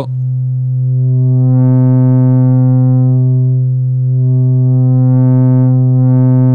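Steady low sine-wave tone from a Livewire AFG oscillator played through the Erica Synths Fusion Tube VCO Mixer. As the input level is turned up, the tube drive saturates and clips the wave, adding a fuzzy top of harmonics that eases back briefly near the middle before rising again.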